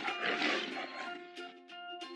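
A lion's roar sound effect trailing off in the first half-second, then background music with steady held notes.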